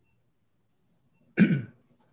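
A person's single short cough about a second and a half in, after near silence.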